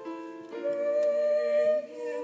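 Live upright piano accompaniment with a solo voice holding a long note over it; a new chord comes in about half a second in and is held for over a second.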